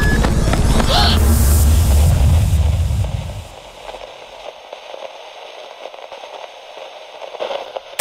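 Low rumbling handling noise on a handheld camera's microphone while the camera is carried along on foot, dropping away about three and a half seconds in. After that, faint crackling static with scattered ticks, and a short burst of glitch noise at the very end.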